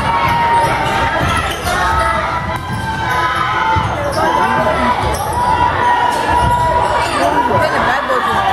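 Basketball game sounds in a gymnasium: a ball bouncing on the hardwood court under the steady chatter and calls of a crowd of spectators.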